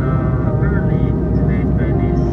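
Airliner cabin noise in flight: a steady low rumble, with a voice heard over it.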